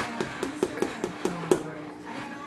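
A flour scoop tapping repeatedly against the rim of a flour canister while the flour is levelled off, about five quick taps a second, stopping after a second and a half.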